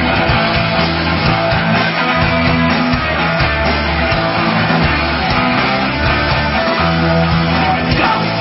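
Live blues-rock band playing an instrumental passage: electric guitar over held bass notes that change every half second to a second.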